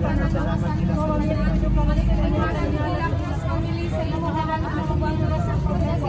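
Several women's voices chanting prayers, overlapping, with some notes held. Under them runs a steady low rumble.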